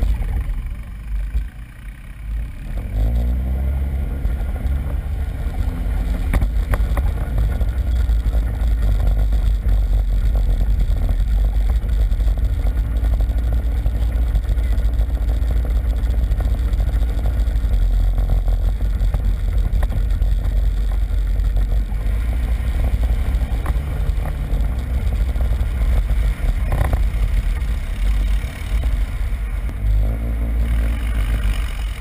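ATV engine running while riding a dirt trail. It eases off briefly about a second in, then revs back up with a rising pitch and runs steadily, rising and falling in pitch a few more times with the throttle.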